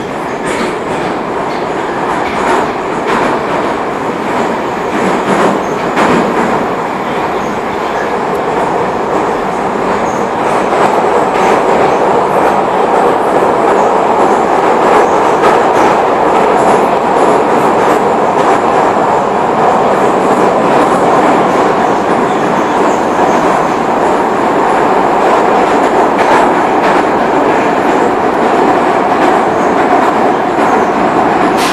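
81-723.1 metro car running at speed, heard from inside the car: a loud, steady rumble of wheels and running gear, with clicks over the first several seconds. It grows louder about ten seconds in and then holds steady.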